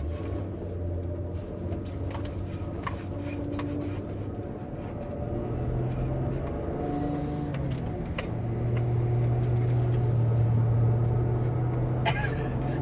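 Van engine and road noise heard from inside the cabin: a steady low hum that rises in pitch and grows louder from about halfway through as the van speeds up.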